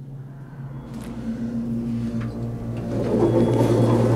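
Hydraulic elevator's pump motor, an original motor on a solid-state starter, giving a steady low hum that grows louder. A jumble of handling and rustling noise joins it near the end.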